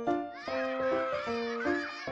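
Bouncy cartoon background music with a repeating melody. From about a third of a second in, a small cartoon baby character's high, squeaky voice chatters over it.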